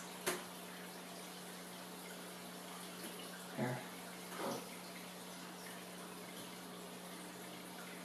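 Faint room tone: a steady low electrical hum under a soft even hiss, with a single click just after the start and one short spoken word midway.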